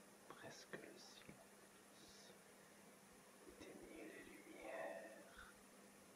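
Faint whispering: a few short hissing sibilants in the first two seconds, then a longer whispered phrase a few seconds in, over near-silent room tone with a faint steady hum.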